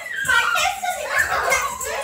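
Children's high-pitched voices shouting and calling out over one another while they play.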